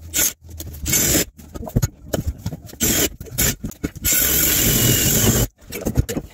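Cordless drill driving a 4-5/8 inch hole saw into plywood, grinding and scraping in short stop-start bursts, then one longer steady cut near the end.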